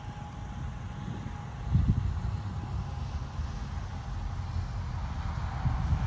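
Wind buffeting the microphone: an uneven low rumble with a stronger gust about two seconds in.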